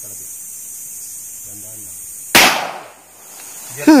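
A single handgun shot about two and a half seconds in: one sharp, loud crack with a short echo dying away over about half a second.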